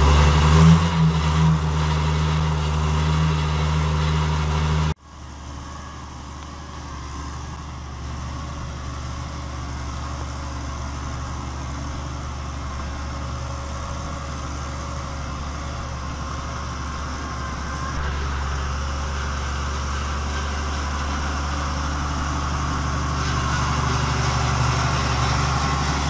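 Farm tractor's diesel engine idling steadily. About five seconds in the sound drops suddenly to a quieter level, then runs on evenly, a little louder in the last third.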